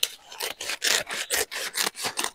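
Scissors cutting through a woven polypropylene cement sack: a run of crisp snips, about four a second, with the stiff plastic rustling.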